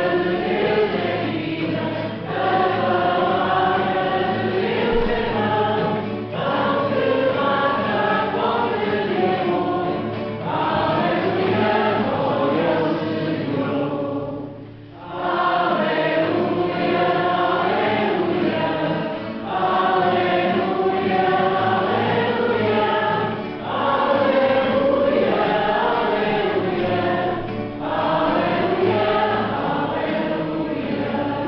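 Church choir singing the Gospel acclamation, in phrases of a few seconds with short breaks between them and a brief pause about halfway.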